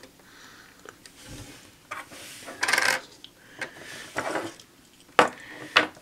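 Small plastic toy tires being handled and set down on a wooden tabletop: rubbing and scraping, with a few sharp clicks as pieces touch down, two of them near the end.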